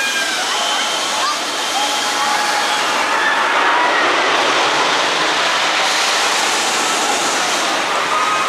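S&S Screamin' Swing ride in motion: a steady rushing noise from the swinging arms that swells through the middle, with faint rider screams and voices on top.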